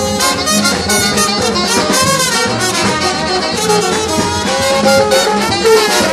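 Live New Orleans brass band playing: trombones, trumpet and saxophone over a steady bass-horn line and a drum beat.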